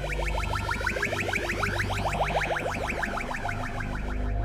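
Goa trance music: a rapid repeating synthesizer pattern with a filter sweep that rises and falls, over a steady bass line.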